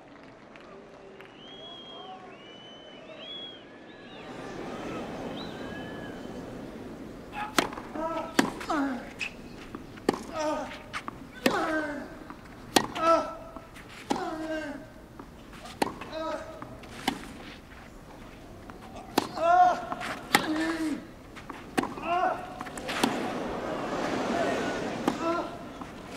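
Tennis rally on a clay court: sharp racket strikes on the ball, each with the hitting player's grunt, traded back and forth about once a second, after a murmuring crowd quiets for the serve. The crowd noise swells over the last few seconds as the rally goes on.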